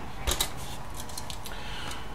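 Light clicks and clatter of an opened Agilent E3648A power supply's sheet-metal chassis and circuit board being handled and turned, with a couple of sharper clicks about a third of a second in, over a steady low hum.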